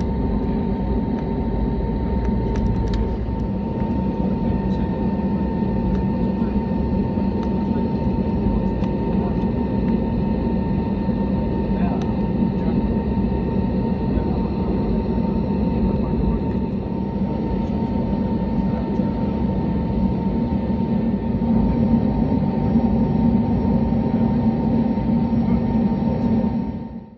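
Airbus A320neo cabin noise while taxiing: a steady engine rumble with a steady whine over it, a little louder in the last few seconds.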